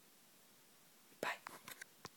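Faint room tone, then a few seconds in a cluster of knocks, clicks and rustles from the phone camera being handled and moved.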